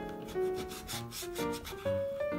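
A kitchen knife sawing through a dried moray eel fillet on a cutting board: a series of quick strokes, over background piano music.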